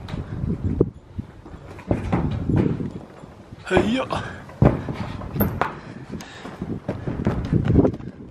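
Hands, knees and feet on corrugated sheet-metal roofing as a person climbs across it: irregular hollow knocks and thumps from the metal sheets, with a short breath or grunt near the middle.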